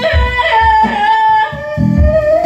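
Free-improvised music: a woman's operatic voice holds a high note, then drops to a lower one about one and a half seconds in, over low electric-bass notes.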